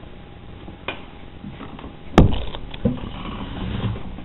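Handling noise over low room tone: a faint click, then a sharp knock about two seconds in and a duller thump just after, while a razor blade finishes trimming soft body filler along a car door edge and the camera is moved.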